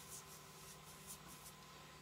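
Faint swishes of a paintbrush's bristles stroking along a baseboard, about two strokes a second, stopping about three-quarters of the way through.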